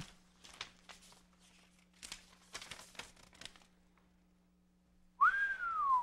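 Quiet paper rustling and crinkling as a letter is taken from an envelope and unfolded, then near the end a man gives one whistle that rises and falls back down, a whistle of admiration at what the letter says.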